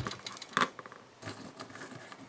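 Small craft items being handled: a sharp click at the start, another about half a second later, then faint taps and rustles as a hand picks through a pile of folded paper lucky stars.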